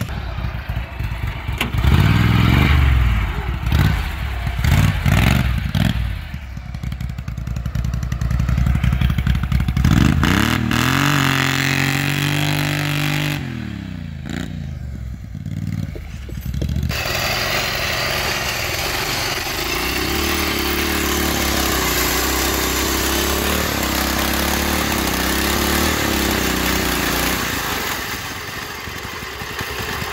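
Small engines of modified lawn tractors running and revving as they drive through mud, the pitch rising and falling. After a break about halfway through, an engine runs steadily for the rest.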